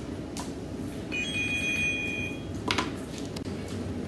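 A mobile phone going off, one steady electronic ringtone or alert note about a second and a half long, followed by a short rustle.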